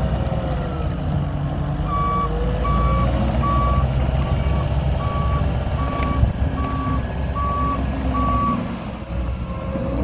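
2017 Takeuchi TL10V2-R compact track loader's diesel engine running as the machine moves, its pitch rising and falling. About two seconds in, its reverse alarm starts, about nine short high beeps a bit under one a second, as the machine backs up. The beeping stops shortly before the end.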